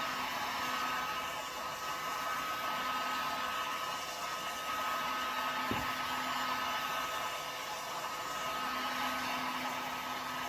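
Handheld electric heat gun blowing steadily, a hiss of rushing air with a faint whine, as it heats a car's tail light assembly. One soft knock a little past halfway.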